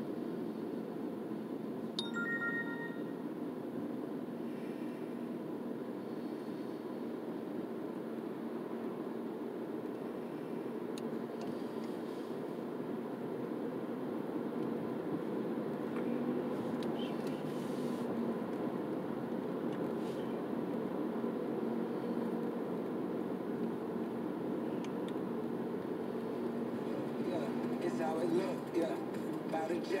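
Steady road and engine noise heard inside a moving car's cabin, with a brief high beep about two seconds in.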